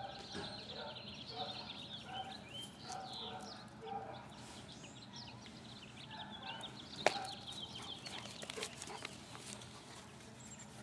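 Birds calling: a run of short chirps and clucks repeating every half second or so. About seven seconds in there is a single sharp click.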